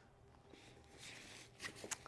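Faint handling noise of a flash head and padded nylon gear case: a soft rustle in the middle, then a few light clicks near the end.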